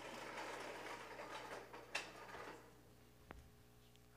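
Faint rustling and movement noise in the room, with one sharp click about two seconds in, then near silence with a small tick in the last second and a half.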